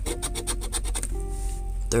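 A coin scraping the scratch-off coating from a lottery ticket in quick back-and-forth strokes, stopping about halfway through. Soft background music plays underneath.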